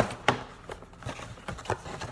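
Paperboard hair-dye carton being opened by hand: a handful of sharp crackles and taps as the card flaps are pulled apart, the loudest at the very start.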